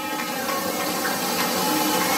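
Recording of Niagara Falls playing: a steady, even rush of falling water.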